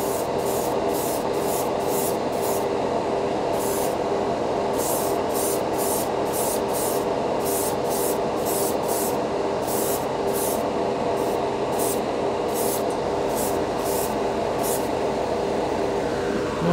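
A Grex gravity-feed airbrush spraying lacquer in short hissing bursts, two or three a second, with a brief pause about three seconds in; the bursts stop shortly before the end. Under them runs the steady hum of the spray booth's fan.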